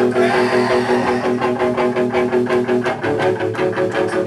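A screamo band playing live: sustained electric guitar and bass chords over busy drumming and cymbal crashes. The chord changes about three seconds in.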